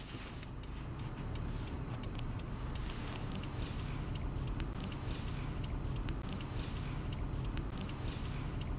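A car's turn-signal indicator ticking evenly, about two to three ticks a second, over the low rumble of the idling car heard from inside the cabin.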